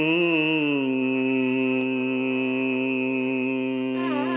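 Carnatic vocal alapana in raga Shuddha Dhanyasi: a male voice slides through a few quick ornamental wavers, then holds one long steady note.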